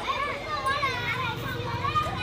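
Several young children talking and calling out at once, their high voices overlapping.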